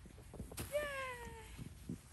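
A toddler's wordless vocal sound, one drawn-out falling call of about a second, over soft crunches of small boots stepping in snow.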